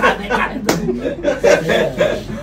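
A group of men laughing hard, with a single sharp slap about two-thirds of a second in.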